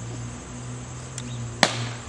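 A plastic bat hits a Blitzball once: a single sharp crack about one and a half seconds in, over a steady low hum.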